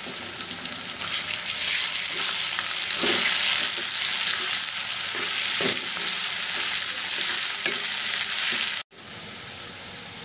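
Sliced onions, potato pieces and garlic paste sizzling in hot mustard oil in a kadai, stirred with a wooden spatula that scrapes and knocks against the pan. The sizzle grows louder about a second and a half in, and cuts out briefly near the end.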